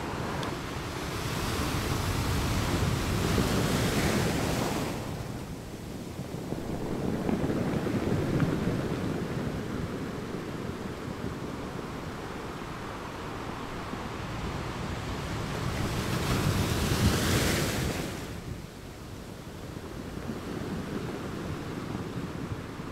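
Ocean surf: waves washing in and out in slow swells, with a loud swell near the end.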